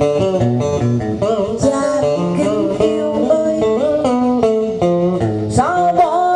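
Music played on a plucked string instrument: a melody of sliding, wavering notes over a lower accompanying line.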